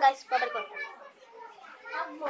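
A young girl's voice talking, with a quieter pause about a second in before her voice returns near the end.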